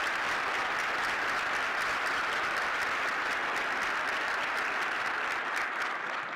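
Audience applauding, a dense steady clapping that tapers off near the end.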